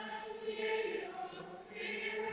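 A congregation singing a short chanted response together, faint and many-voiced. It is typical of the sung reply to the priest's greeting just before the Gospel is announced.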